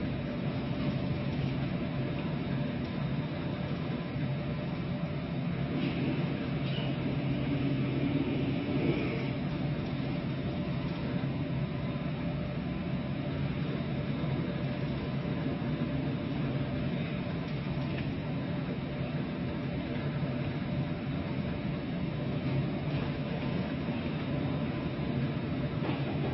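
Steady hum of an LPG carrier's engine and machinery under way, mixed with a constant rush of wind and sea.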